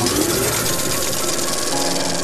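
Film projector sound effect: a fast, even mechanical clatter. A few music notes come in near the end.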